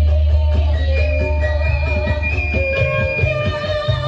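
Music with heavy bass played loud through a large outdoor PA sound system during a sound check. A long, deep bass note holds for the first second and a half, then gives way to shorter bass notes under a melody.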